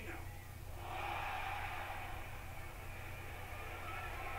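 Arena crowd reacting from a television broadcast: a swell of crowd noise that rises about a second in and fades, over a steady low hum.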